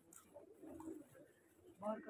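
Domestic high-flyer pigeons cooing faintly in a loft, with a voice starting up near the end.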